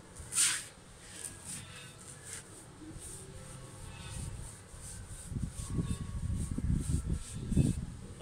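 A paintbrush scrubbing paint onto a rough concrete wall: a sharp swish about half a second in, then a run of lighter strokes a few per second. Low bumps and rumbles fill the last three seconds.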